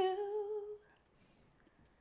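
A woman's voice holds a sung note with a light vibrato for under a second as a gospel line ends, then stops, leaving a short pause.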